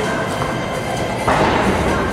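Background music playing over the general noise of a large arena hall, with a thud a little past halfway through.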